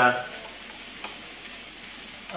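A single short plastic click about halfway through, over a steady hiss: the folded arm of a foldable quadcopter drone being worked out of its folded position by hand.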